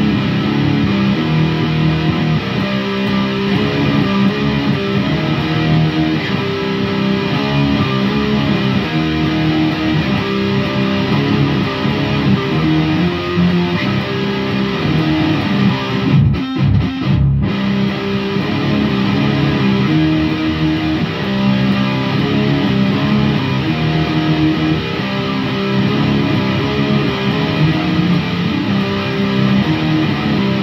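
Electric guitar: a recorded riff repeating from a looper pedal, with a live lead guitar part played over it. There is a brief break in the sound about sixteen seconds in.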